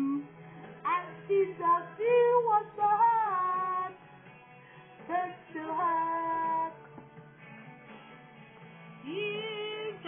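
A woman singing a song with instrumental backing, played from a television's speakers, in phrases with short pauses between them.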